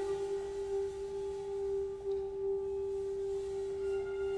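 Chamber orchestra holding a single soft, steady, almost pure sustained note, with faint higher tones above it.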